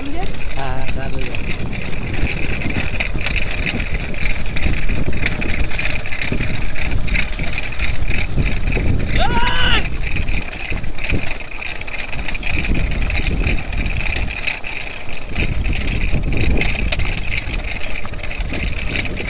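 Bells on a pair of racing bulls jingling without a break as they gallop pulling a bullock cart, over a heavy low rumble of wind on the microphone. About halfway through, a short rising-and-falling shout cuts in.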